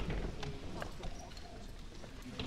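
Room noise in a meeting hall: scattered light knocks and clicks from people moving about, with faint, indistinct voices.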